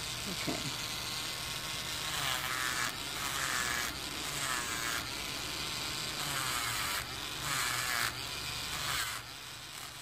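Electric nail drill with a ceramic bit running steadily, filing nail polish off an acrylic nail; its whine wavers in pitch in several short stretches as the bit is worked against the nail.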